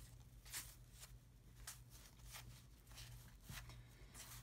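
Faint, soft flicks of 1990 Topps cardboard football cards being moved one at a time from stack to stack, roughly one every half second, over a low steady hum.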